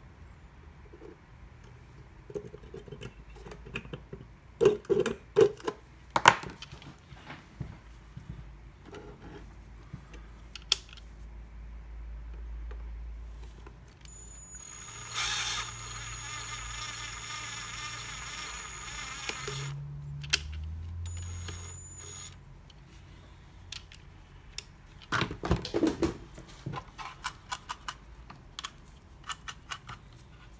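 Cordless drill running steadily for about five seconds with a high whine, then two short bursts, as it works on a plastic project-box enclosure. Before and after, hard plastic parts and tools knock and clatter on the cutting mat.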